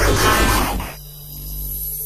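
Electronic static-and-hum sound effect: a burst of harsh static that drops about halfway through into a steady electrical hum with a thin high whine.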